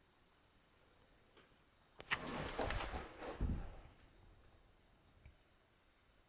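In a near-silent room, a sharp click about two seconds in, followed by about two seconds of rustling and scraping that ends in a dull thump, then quiet room tone again.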